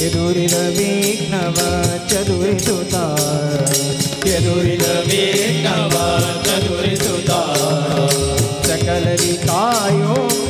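Devotional bhajan singing: voices over a harmonium's held tones, with a barrel drum and small hand cymbals keeping a steady beat.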